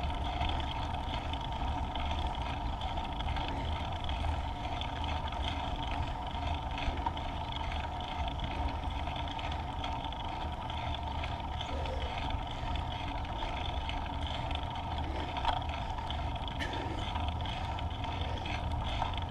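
Citroën Space Scooter rolling along a road: a steady rumble and hiss of wheels and wind on a handlebar-mounted camera, with a couple of faint clicks near the end.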